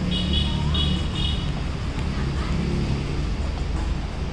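Road traffic, with vehicle engines running in a steady low hum. Three short, high beeps sound in quick succession in the first second and a half.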